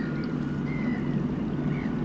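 Outdoor shoreline ambience: wind noise on the microphone with a steady low hum underneath, and a few faint short high sounds.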